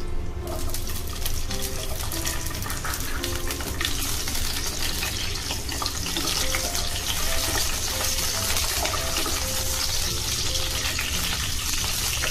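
Whole green grapes sizzling in hot oil in a nonstick pan, stirred now and then with a wooden spatula; the sizzle starts about half a second in and grows louder and brighter about four seconds in. Faint background music plays underneath.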